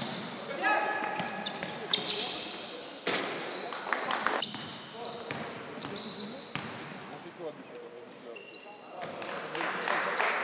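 Live basketball game sound: a basketball dribbled and bouncing on a hardwood court, with short high squeaks of sneakers on the floor scattered through.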